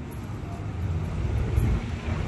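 Wind buffeting the phone's microphone on an open high-rise balcony: an uneven low rumble that swells a little about one and a half seconds in.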